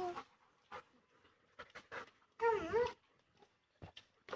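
German shepherd dog whining: a short pitched whine at the start, then a louder, longer whine about two and a half seconds in whose pitch dips and rises again.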